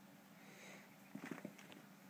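Faint scuffling and a few soft taps about a second in, as a cat grabs its catnip mouse toy and scrambles off with it across carpet, over a low steady hum.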